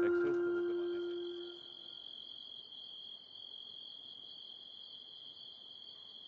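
Held notes of a mallet-percussion music cue ring out and fade away over the first second and a half. A faint, steady, high-pitched cricket trill continues after them as night ambience.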